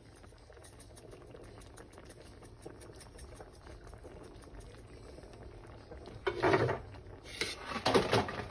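Thick cream sauce with penne and mushrooms simmering in a frying pan, a soft steady crackle of small bubbles popping. Near the end come two short, louder bursts of noise.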